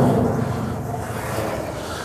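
Large sheet-metal side door of a round baler swinging open on its hinges: a steady rumble that slowly fades.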